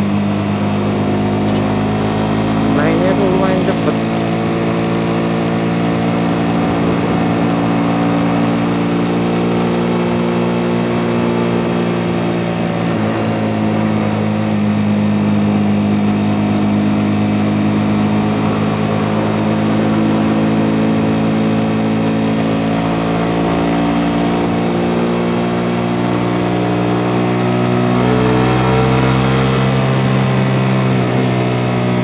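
Suzuki GSX-S150's single-cylinder engine running under way at a steady cruising speed, its pitch holding steady then rising near the end as the bike accelerates.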